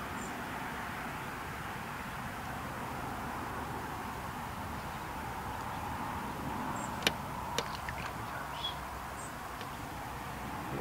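Steady outdoor background hiss with a few sharp small clicks about seven seconds in and faint brief high chirps.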